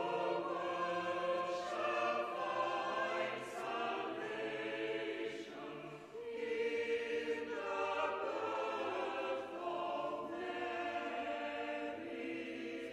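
A small church choir singing a carol in a large stone church, with held notes and a short break between phrases about six seconds in.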